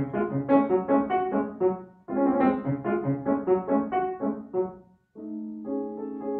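Solo grand piano playing classical music: phrases of quick notes that break off briefly about two seconds in and again about five seconds in, the last resuming as softer held chords.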